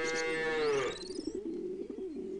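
A cow mooing once, the call falling in pitch as it ends about a second in, with a high rising chirp over its end.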